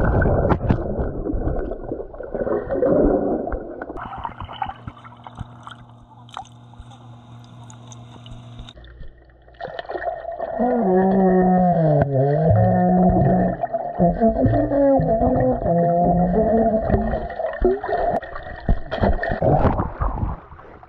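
pBone plastic trombone played underwater, heard through the water: after splashing and bubbling, a muffled low note sounds from about ten seconds in, wavering and dipping in pitch with gurgling. Air blown through the instrument keeps water out of the bell, and bubbles breaking that air pocket at the bell make the tone unsteady.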